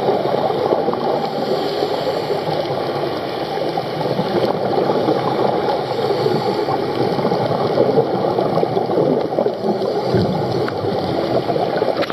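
Underwater sound picked up by a camera in its waterproof housing while diving: a steady, crackly, bubbling rush of water noise. It cuts off suddenly at the end.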